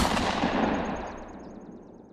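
A sudden loud bang-like sound effect that dies away over about three seconds, with a rapid high ticking running through its fading tail.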